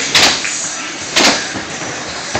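Skateboard wheels rolling over the skatepark floor, with two sharp board clacks, one just after the start and one about a second in.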